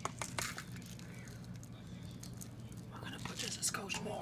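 Quiet kitchen room tone with a low steady hum. A few faint clicks come in the first half second, and a faint voice is heard near the end.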